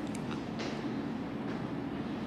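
A pause in the talk filled by steady low background hum and hiss picked up by the microphone, with a few faint clicks near the start.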